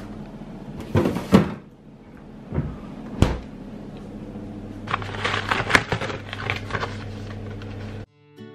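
Kitchen handling noises: a couple of knocks about a second in and a sharp click near the middle, then a run of rustling and clicking as a cardboard burger box is handled and opened, over a low steady hum.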